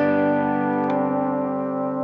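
Electric lap steel guitar (a Gretsch G5700 Electromatic) ringing a G chord in open D tuning. About a second in, a Certano palm bender pulls one string up a semitone, so the chord shifts to a G sus4 and keeps sustaining.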